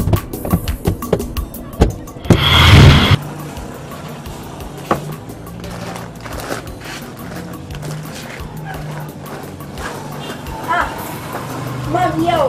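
Background film music: a low held bass tone with light ticking percussion. A loud burst of noise, under a second long, comes about two and a half seconds in, after a run of sharp clicks.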